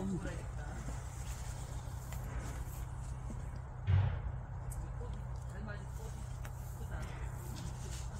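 Steady low background rumble with faint distant voices, and a single low thump about four seconds in.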